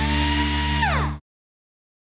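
Short electronic sound logo. A whine rises and holds steady over a low hum, then drops sharply in pitch about a second in, and the whole sound cuts off just after.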